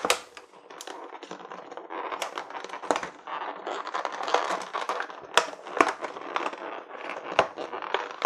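Cardboard packaging of a Magic: The Gathering Commander 2019 deck scraping and rustling as the deck box is pushed out of its tight cardboard sleeve, with a few sharp clicks and taps in the second half.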